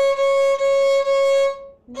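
Violin playing C# on the A string with the second finger, the same note bowed in several separate strokes at one steady pitch, stopping shortly before the end.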